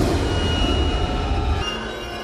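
Logo-sting sound effects: a dense low rumbling whoosh with a thin high steady tone over it. The low rumble drops away near the end.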